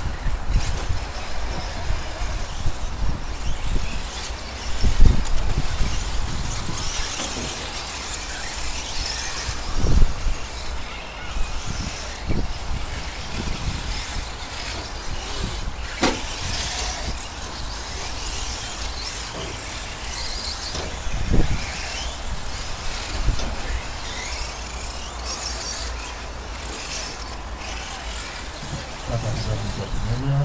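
Radio-controlled 4x4 short-course trucks racing on a dirt track, a high whir from their motors and tyres rising and falling as they pass, over a steady low rumble. A few dull thumps stand out, the loudest about five and ten seconds in.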